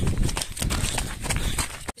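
Footsteps on dry ground and rustling from a phone carried while walking: a quick, irregular run of clicks over a low rumble. The sound cuts off abruptly just before the end.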